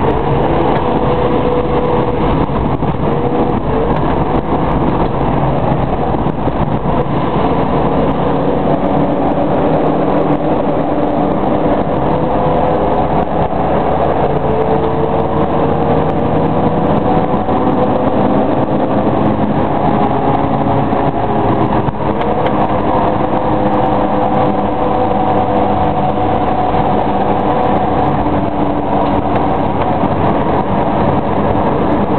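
Car engine and road noise heard from inside the cabin while driving, steady and loud, the engine's pitch slowly climbing and falling with speed and shifting abruptly about two-thirds of the way through.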